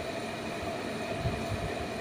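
Steady mechanical hum and hiss of room background noise, with a few soft low thuds around the middle.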